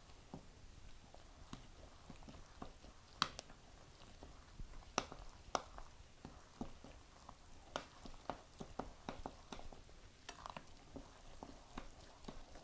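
Metal spoon stirring a thick, lumpy batter of cornbread mix, creamed corn and diced ham in a glass mixing bowl: faint, irregular clicks and knocks of the spoon against the glass, with soft wet mixing sounds.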